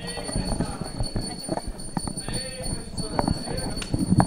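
Indistinct murmur of several people talking at once in a hall, with scattered irregular clicks and knocks.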